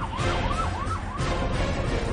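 A siren wailing in quick rising-and-falling sweeps, about four a second, over loud theme music. The siren stops a little over a second in, and the music carries on.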